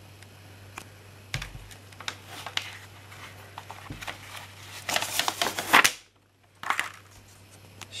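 A plastic Blu-ray case and its paper cover insert being handled: scattered clicks and taps, two with a dull thump, then a denser run of clicking and rustling about five seconds in. That run cuts off suddenly into a brief silence.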